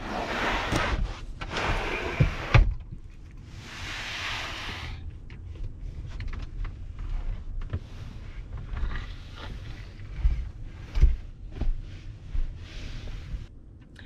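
A slide-out camper bed being pulled out and laid flat: several scraping, rushing pulls in the first five seconds, then rustling of bedding and foam mattress with a few soft thumps and sharp knocks near the end.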